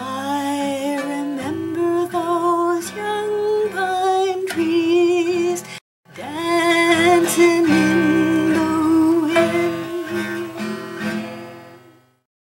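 A woman singing to a strummed acoustic guitar, her voice wavering in a light vibrato on held notes. The sound cuts out completely for a moment about halfway through, resumes, and fades out at the end.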